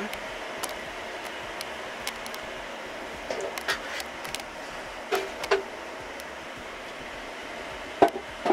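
Steady whirr of rack-server cooling fans, with a few light clicks and brief knocks from handling the open server chassis.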